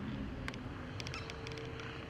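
Quiet outdoor background: a steady low rumble with a faint hum, and a few light, short high ticks around the middle.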